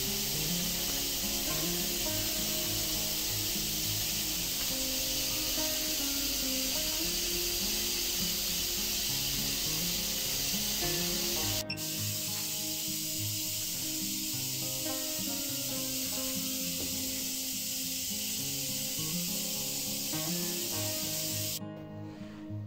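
Steady high-voltage corona discharge hiss from a copper-wire ion thruster's electrodes, cutting off abruptly near the end as the high-voltage supply is switched off. Background music plays throughout.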